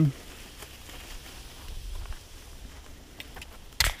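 Footsteps walking on a leaf-litter and pine-needle forest trail, soft scattered crunches over a low rumble, with one sharp knock near the end.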